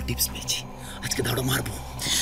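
A person speaking: dialogue with nothing else standing out.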